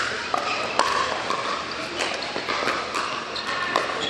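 Pickleball rally: paddles popping against a plastic ball about once a second, in a large indoor hall.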